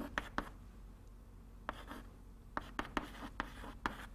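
Chalk writing on a blackboard: short scratchy strokes, a few near the start and a quicker run through the second half.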